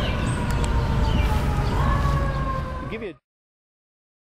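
Outdoor urban background: a steady low traffic rumble with faint high tones above it, one rising slightly midway. It cuts off abruptly to silence about three seconds in.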